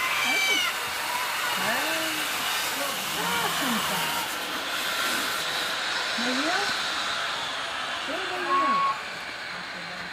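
Steady hiss of wind on the microphone, with several faint, short rising-and-falling whines.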